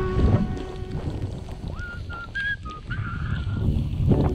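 Wind buffeting an action camera's microphone and a snowboard sliding through powder, an uneven low rush. A few short high whistle-like tones come about halfway through, and music cuts off just after the start.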